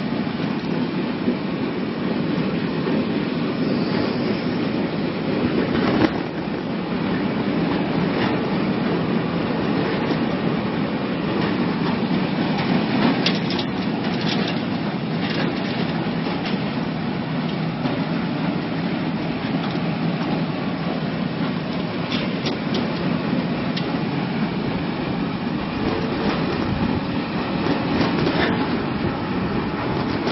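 Potato washing and peeling machine running: a steady mechanical rumble and clatter of potatoes tumbling in the roller drum, with occasional sharper knocks.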